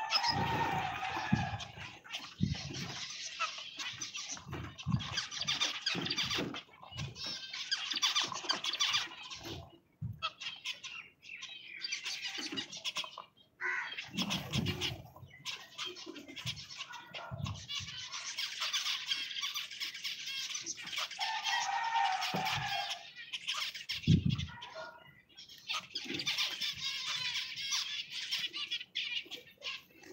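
A flock of zebra finches chattering with many short, overlapping calls, with scattered low thumps mixed in.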